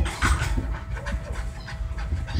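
British Shorthair kitten hissing: a strong breathy burst about a quarter second in, followed by several shorter puffs.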